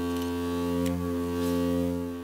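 Steady low tone from loudspeakers driving a black metal Chladni plate at a single hand-set low frequency, in the 10 to 150 Hz range, making the plate resonate so the sand on it shifts into node patterns.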